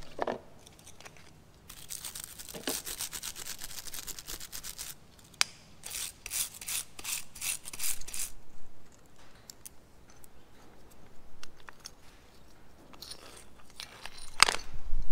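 Steel wire brush scrubbing years of dust and grime off a Land Rover Defender's rear wiper motor spindle housing: two bouts of rapid back-and-forth scratching strokes, with lighter clicks of the parts being handled near the end.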